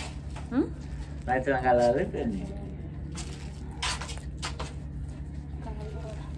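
Thin plastic bag rustling and crinkling in three short bursts in the second half, as hands work in it. A woman's voice is heard briefly in the first half.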